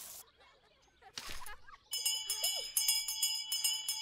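A school handbell being rung rapidly and repeatedly, bright ringing strikes starting about two seconds in: the bell calling the children in from play.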